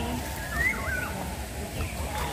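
Bird calls: a few short whistled notes that rise and dip, about half a second in, over faint background voices.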